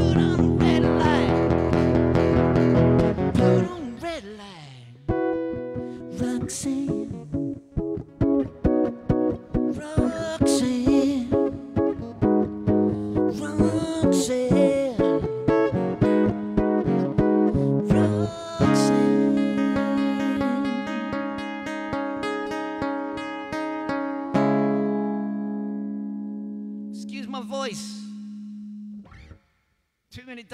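Round-backed acoustic guitar played live with a man singing over it for the first few seconds. The guitar then carries on alone in an instrumental passage of picked notes and strums. About 24 seconds in it settles on a final chord that rings out and fades away.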